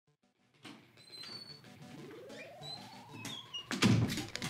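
Video game audio from a TV: music and sound effects with high chirps and one long rising sweep. It starts after a brief near-silence, and a loud thump comes near the end.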